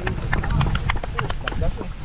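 Water splashing and plastic bags crinkling as fish fry are emptied from plastic bags into shallow river water: a quick run of short, sharp clicks and splashes over a low rumble.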